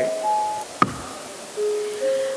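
A single sharp knock a little under a second in, typical of the presiding officer's gavel after a motion is carried, over a few faint steady tones in the hall's sound system.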